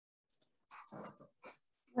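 A dog makes two or three brief, faint sounds through a participant's microphone on a video call.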